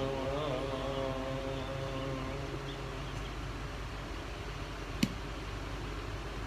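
A man's singing voice holds the final note of a hymn and fades out about two seconds in. After it comes a steady low background hum, and a single sharp click about five seconds in.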